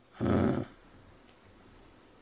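A short, rough throat sound from an elderly man, lasting about half a second just after the start, followed by faint room tone.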